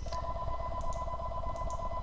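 Electronic telephone ringer trilling: two steady pitches warbling rapidly, one ring lasting about two seconds.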